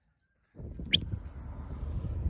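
Wind rumbling on a phone microphone, starting about half a second in after a moment of silence, with one short, high, falling chirp about a second in.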